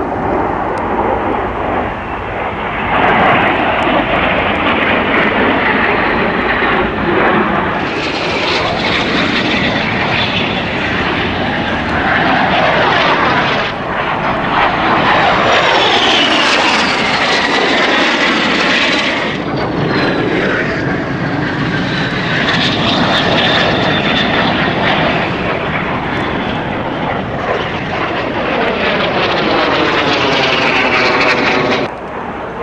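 Aero L-39 Albatros jet trainers' turbofan engines passing overhead in a formation display, the sound swelling and fading with each pass and its pitch sliding as the jets go by.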